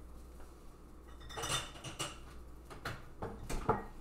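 Hot glass quart mason jars being handled and set down on a wooden cutting board: a few separate knocks and clinks, starting about a second and a half in.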